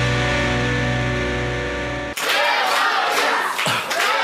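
A TV quiz-show music sting: a held chord over a deep bass that cuts off suddenly about two seconds in. Then comes a noisy stretch of many voices mixed with sharp short sounds, like a studio crowd calling out.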